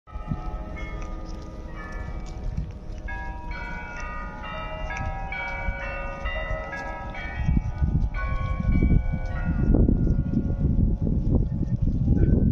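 Bells ringing a tune, one clear ringing note after another with the notes overlapping as they sustain. From about halfway a low rumbling noise grows louder and covers them near the end.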